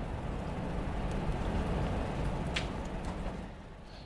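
Steady, low rumbling room noise in a pause between speech, with one faint click about two and a half seconds in.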